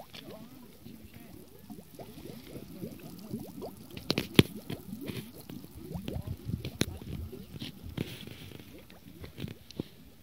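Gas bubbling up through the shallow water of a mineral spring vent: a steady run of quick gurgling pops, with a couple of sharper clicks about four and seven seconds in.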